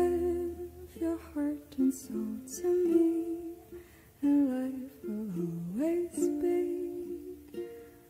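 Acoustic music of plucked strings carrying a melody that dips low and slides back up about five seconds in.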